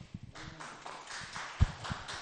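Footsteps knocking on a hollow stage platform, with one sharper thump a little past halfway, over a light haze of clapping.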